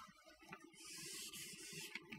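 Faint scratching of chalk writing on a blackboard: a soft hiss that starts just under a second in and lasts about a second.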